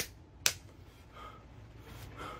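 Two sharp smacks of fists knocked together, about half a second apart, the second louder.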